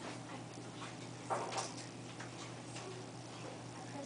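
Quiet classroom room tone: a steady low hum with a few faint small knocks, and one brief louder noise about a second and a half in.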